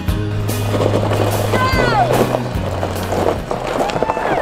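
Background music over the rolling rumble of a Jeep driving on a rough gravel track, with a short high exclamation about halfway through.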